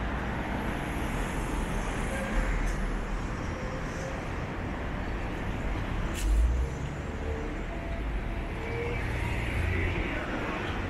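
Road traffic on a city street: a steady noise of passing cars' tyres and engines, with a brief low thump about six seconds in.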